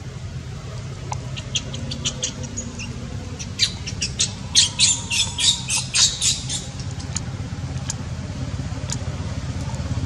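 A rapid run of short, sharp, high-pitched chirps, about two or three a second, loudest in the middle, over a steady low rumble.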